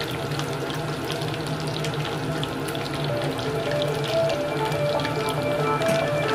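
Battered chicken skin deep-frying in hot oil, a steady sizzle with fine, rapid crackles and pops throughout.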